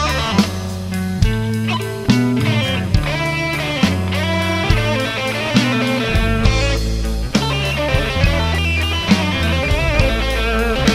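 Slow electric blues: a lead electric guitar playing bent notes with vibrato over bass, with a drum kit marking a slow beat of about one hit a second.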